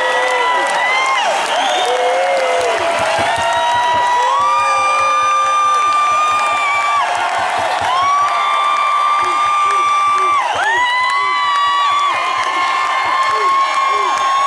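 Concert audience cheering and applauding, with long, loud whoops and screams held by fans close to the microphone.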